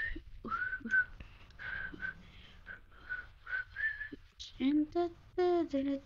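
A person whistling a short, broken tune of quick notes at a steady pitch. About four and a half seconds in, a few wordless voiced notes with sliding pitch follow.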